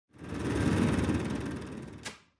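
A dense rumbling noise that swells up within the first half-second and then gradually fades away.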